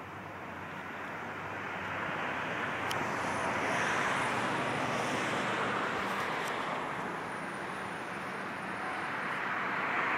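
A vehicle passing: a rushing noise that swells to a peak about four seconds in and then fades slowly.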